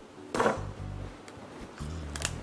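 A cleaver chopping into a cooked crayfish's shell: one sharp crunch about half a second in, then a few faint clicks, over background music with a steady bass line.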